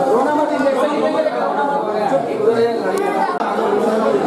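Indistinct chatter of many people talking over one another in a crowded room, with a momentary gap about three and a half seconds in.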